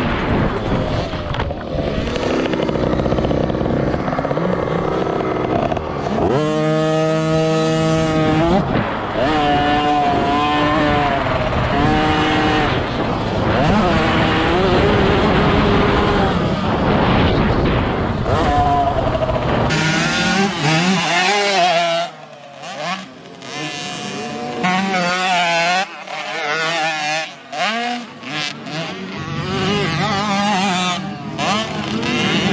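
Small two-stroke youth motocross bike engine heard close up from on board, revving up and falling away again and again as the bike goes through the track. About two-thirds of the way through, the sound turns quieter and more distant, with minibike engines rising and falling in pitch.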